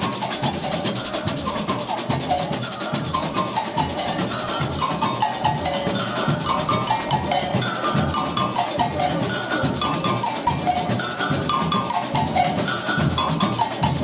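Samba school bateria playing: large multi-bell agogôs ring out a repeating melodic pattern of stepped bell notes over a fast, even shaker rattle and drums below.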